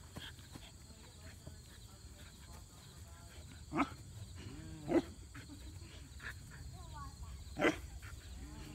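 A 4-month-old puppy barking at a rag being worked in front of it: three short barks spaced a second or more apart, the last near the end.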